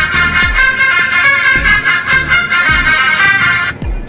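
A feature phone's power-on jingle played through its small, newly replaced loudspeaker, thin and tinny with no bass, cutting off shortly before the end. The tune sounding shows the replacement speaker works.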